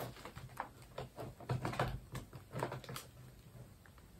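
Irregular run of light clicks, taps and rustles as small objects and cards on a cluttered craft desk are handled and moved about, loudest in the middle.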